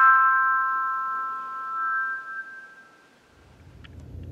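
Handbells, a handbell choir striking a chord of several bells that ring on and die away over about two to three seconds. A low rumble comes in near the end.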